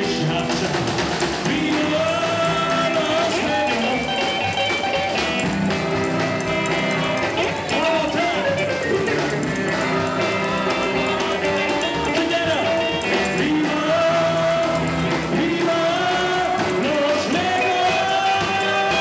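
Live rock and roll band playing: upright double bass, electric guitar and drums, with a male singer's voice coming and going over the band.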